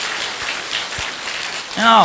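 Audience applauding, a steady patter of many hands. A man's voice comes in with a laugh near the end.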